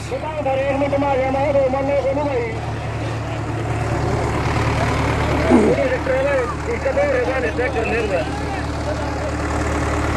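Sonalika DI 750 tractor's diesel engine running steadily under load as it drags a disc harrow through soil, with people's voices calling out over it at times.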